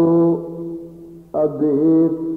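A man's voice chanting in long, drawn-out sung notes, the intoned delivery of a preacher's sermon. There are two held phrases: the first fades within about a second, and the second begins a little over a second in.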